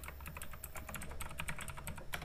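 Computer keyboard typing: a quick, irregular run of keystrokes as an email address is typed.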